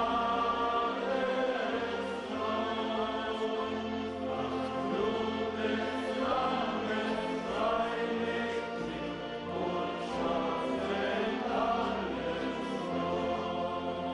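A church congregation singing a slow chorus together in long, held notes.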